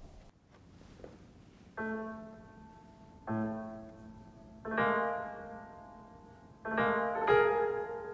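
Computer-rendered piano playback of a solo piano piece at its original tempo of quarter note = 120. After about two near-silent seconds, five chords or notes sound, each ringing and fading.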